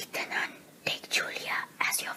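A person whispering a few words.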